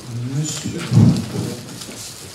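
Handling noise on a lectern microphone as it is adjusted: low rumbling and rubbing, with a loud dull thump about a second in.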